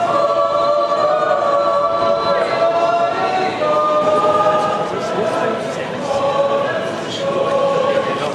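Swiss yodel choir singing a cappella in close harmony, the voices holding long chords.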